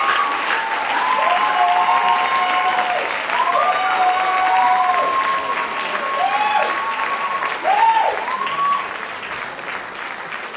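Audience applauding, with several long drawn-out cheers held over the clapping; the applause dies down near the end.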